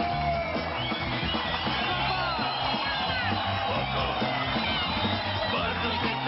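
Rock band playing an instrumental passage: an electric guitar lead with bending notes over a steady bass line, with keyboard and drums.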